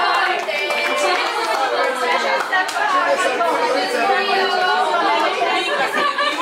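Many people talking at once around a table: overlapping chatter of a group of adults in a room.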